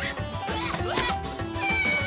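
Cartoon soundtrack: busy background music with a cartoon cat character's vocal cry and a high falling whistle effect near the end.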